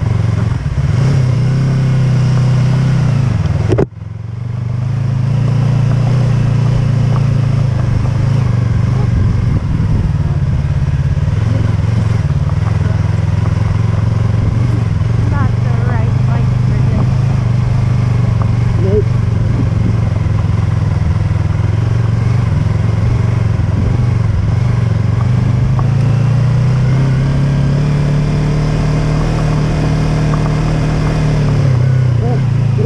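Yamaha YZF-R3's parallel-twin engine running at a steady riding speed, under wind noise and a rough low rumble from the gravel road surface. The sound drops out sharply for a moment about four seconds in, then comes straight back.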